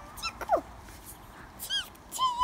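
A young child's high, squeaky voice making three short bird-like chirps in imitation of a sparrow, the middle one gliding down in pitch.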